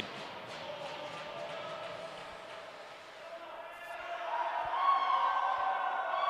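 Ice rink ambience echoing in the arena: a hum of distant voices that swells in the last couple of seconds, with a couple of faint knocks from play on the ice.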